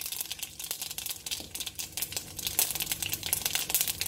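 Hot oil crackling and spitting in a clay pot as small grains fry in it, with dense, rapid pops.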